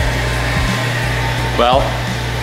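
Ball beater candy mixer running steadily, its motor humming as the beater arms work through a batch of buttercream in the kettle. The sugar has been beaten into cream and the batch is nearly finished. A voice speaks briefly near the end.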